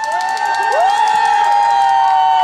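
Crowd cheering: several long, high-pitched screams that overlap and each drop in pitch as they end, with some clapping underneath.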